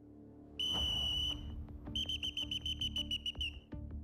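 A whistle blown hard: one long blast about half a second in, then a fast run of short blasts, about six a second. It is the wake-up signal that rouses sleeping troops at night.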